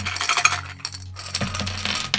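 Small metal pieces clinking and rattling together in a dense run of sharp, ringing clicks as they are handled and tossed.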